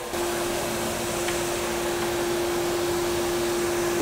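CNC mill drilling a small hole in a metal block under coolant jets: a steady single-pitch whine sets in just after the start over the hiss of the coolant spray.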